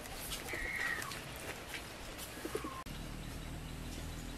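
Birds calling outdoors: one call glides downward about half a second in and a shorter call follows around two seconds in, over light outdoor background noise that changes abruptly near the end.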